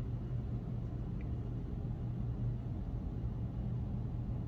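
Steady low background rumble with a constant hum, unchanging throughout.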